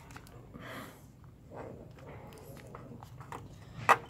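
Faint handling noises: scattered light clicks and a short soft rustle, with a sharper click just before the end.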